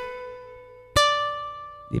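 Acoustic guitar: a note slid up on the second string to the 12th fret rings and fades, then about a second in a higher note is plucked on the first string at the 10th fret and rings out.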